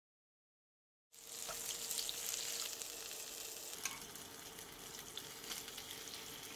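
Jeon sizzling in hot oil in a frying pan: a steady hiss with scattered small pops. It starts suddenly about a second in.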